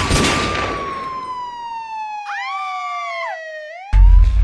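Dramatic title-intro sound effect: a single long siren wail slowly falling in pitch, over a noisy hit that fades during the first second. A second, shorter siren wail joins about halfway through, and a deep boom lands right at the end.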